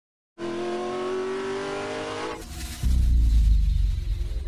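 Car engine sound effect: an engine revving with a slowly rising pitch, then a short rushing noise and a loud, deep rumble from just under three seconds in.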